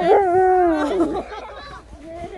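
A malamute giving one long howling 'talking' call that dips in pitch at the start, holds, then trails off about a second and a half in.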